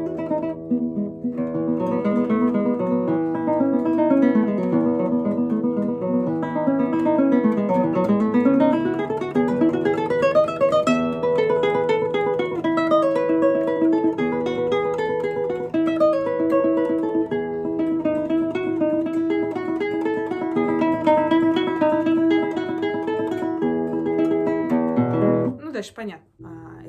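Nylon-string classical concert guitar played solo with the fingers: flowing arpeggios and runs over ringing bass notes, with a long run sweeping down and back up. The playing stops suddenly just before the end.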